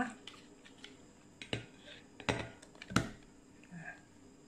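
A few light clicks and knocks of a plastic pudding mold against a ceramic plate as a set milk agar pudding is turned out of it, the three sharpest about a second and a half, two and a quarter, and three seconds in.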